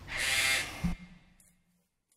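Handling noise from a Gibson J-45 acoustic guitar as the playing stops: a brief scraping rustle lasting about half a second, then a single low thump.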